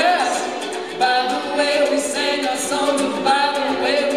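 A man and a girl singing a folk song together in harmony, with a ukulele strummed underneath.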